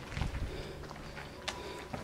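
Footsteps on a dusty concrete floor: a few soft steps, with a single sharp click partway through.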